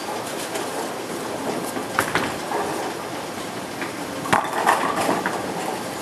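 Bowling alley din: a steady rumble of balls rolling on the lanes, with sharp clatters of pins being hit about two seconds in and again just past four seconds, the second the loudest.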